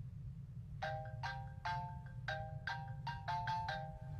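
Phone ringtone playing a quick melody of struck, chime-like notes, starting about a second in, over a steady low hum.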